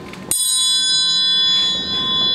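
A metal triangle struck once, about a third of a second in, ringing on with a bright cluster of high tones that barely fade over the next two seconds.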